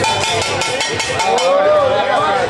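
Spectators yelling and shouting around an amateur boxing bout, with long drawn-out yells in the second half, along with several sharp smacks.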